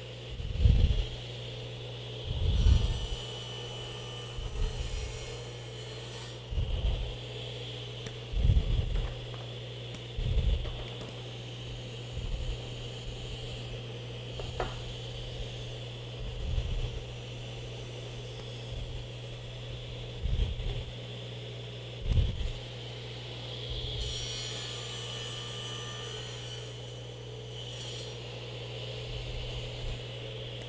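Table saw running steadily with its blade tilted, bevelling the edges of a clamped octagonal wooden blank. Hissing cuts come at about three seconds in and again near the end, with dull thumps about every two seconds as the blank is turned and reclamped.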